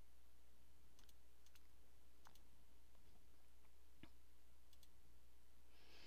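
Several faint computer mouse clicks, irregularly spaced, over a steady low hum.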